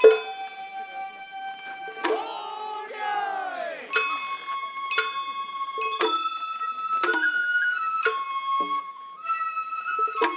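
Sawara-bayashi festival ensemble playing live: a bamboo flute holds long notes, stepping between pitches, over sharp percussion strikes about once a second that ring on brightly. About two seconds in, a wavering, sliding sound lasts a second or so.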